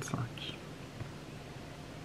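A woman's voice trails off in the first moment, then quiet room tone with a faint, steady low hum.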